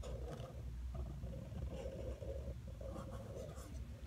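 Drawing on paper: a run of short scratching strokes, one after another.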